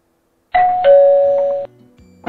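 A two-note ding-dong chime: a higher note about half a second in, then a lower note, both ringing briefly before stopping together. It sounds like a doorbell-style chime effect.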